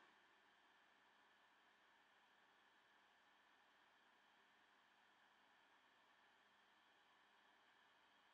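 Near silence: faint steady hiss with no distinct sounds.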